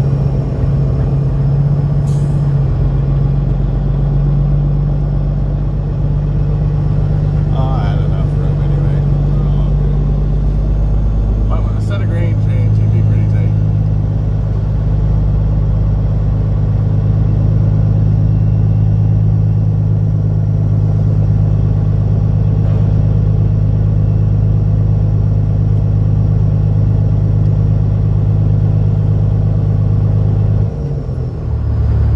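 Peterbilt semi's diesel engine running at low, steady revs as the truck creeps forward, heard from inside the cab. About twelve seconds in, its note drops and holds lower.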